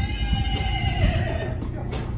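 A horse whinnying once: a long call of about a second and a half that wavers and drops in pitch near its end, over a steady low rumble.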